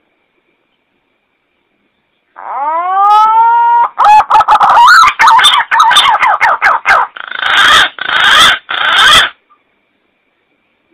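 Green pigeon (punai) calling, played from a lure-call recording. About two and a half seconds in comes a rising whistled note, then a fast run of wavering whistles, then three louder, harsher, distorted notes that stop near the end.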